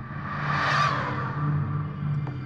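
Film soundtrack whoosh that swells up to a peak a little under a second in and then fades away, over a steady low drone.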